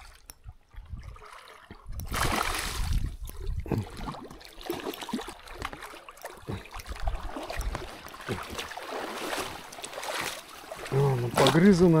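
Water splashing and sloshing irregularly as a hooked pike is hauled through the shallows to the bank, starting about two seconds in.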